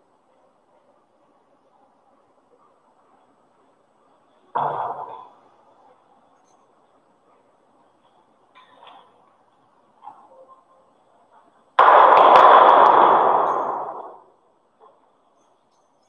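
A sudden clang about four and a half seconds in that dies away within a second, a few faint knocks, then a louder clang near the twelve-second mark that rings on and fades over about two seconds.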